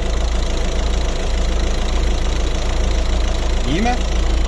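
Citroën C4 Picasso's 115 hp 1.6 HDi four-cylinder turbodiesel idling steadily, heard from over the open engine bay; it runs nicely and evenly.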